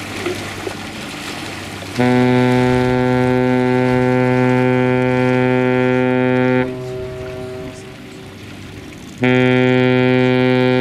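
Cruise ship's horn sounding two long, deep blasts: the first starts about two seconds in and is held for nearly five seconds, and the second starts near the end and is still sounding.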